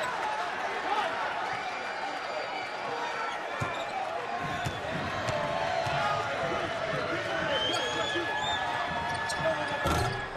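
A basketball bouncing on a hardwood court at the free-throw line, over steady arena crowd murmur and scattered voices.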